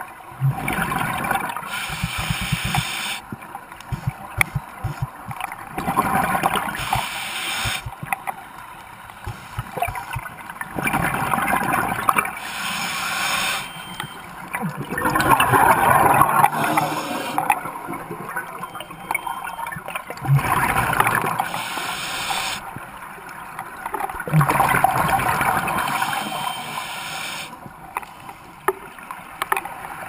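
Scuba diver breathing through a regulator underwater: exhaled bubbles gurgling past the camera in regular bursts a few seconds apart, with quieter stretches between breaths.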